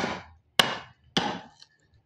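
Steel-headed hammer striking the capped handle of a wood chisel three times, about every 0.6 seconds, driving it into timber to chop out a mortise. Each blow is a sharp knock that dies away quickly.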